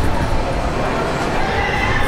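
Wind buffeting the microphone inside a swinging Ferris wheel gondola as it rocks, with faint thin drawn-out tones over the rumble.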